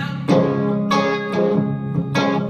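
A solo guitar strumming chords, each new strum about every half second and ringing on into the next.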